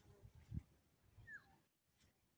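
Near silence: faint outdoor background with a few soft low thumps, the strongest about a quarter of the way in, and a faint short falling call a little past halfway.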